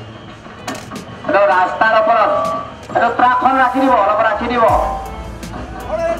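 Music with a voice singing, held and bending notes, with a low steady hum coming in near the end.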